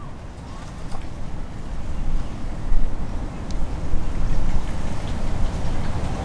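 Wind buffeting the microphone: a rumbling rush that rises and falls unevenly, with a faint tick about a second in and another about three and a half seconds in.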